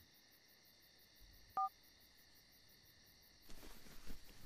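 Faint crickets chirring steadily, stopping about three and a half seconds in. About one and a half seconds in, a mobile phone gives one short two-tone beep as the call ends.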